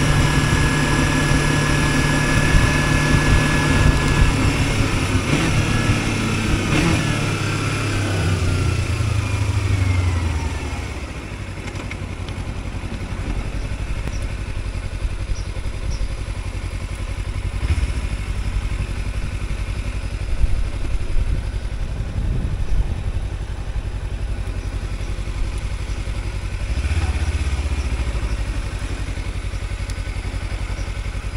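Kawasaki Versys X-300's parallel-twin engine on the move with wind rush. Over several seconds the engine pitch falls and the wind fades as the bike slows down. It then runs low and steady at idle or walking pace, with a short blip of throttle near the end.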